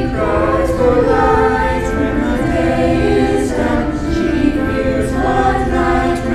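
Eighth-grade choir singing held chords in harmony, with short hisses from sung 's' sounds.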